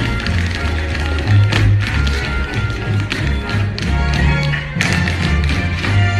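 Tap shoes of a group of dancers striking a stage floor in quick, dense rhythms over loud music with a heavy bass line.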